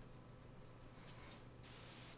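A single high-pitched electronic beep, one steady tone lasting about half a second near the end.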